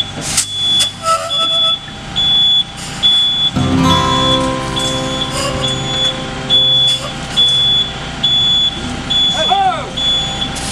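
Concrete mixer truck's warning beeper sounding in a steady high beep, about one and a half beeps a second, over the truck's diesel engine running. The engine grows louder about three and a half seconds in.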